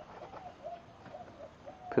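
A dove cooing in the background: a string of short, low, faint hoots, some falling slightly at the end. A single sharp knock comes just before the end.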